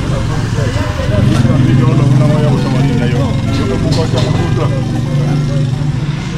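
A motor vehicle engine running steadily, swelling louder from about a second in, with people's voices over it.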